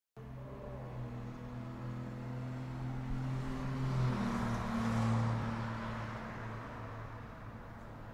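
A motor vehicle passing: a steady low engine hum under a swell of road noise that rises to a peak about halfway through and then fades.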